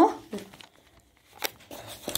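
Faint paper rustling with a single sharp tap about a second and a half in, as a pen works on paper, after the tail of a spoken word at the start.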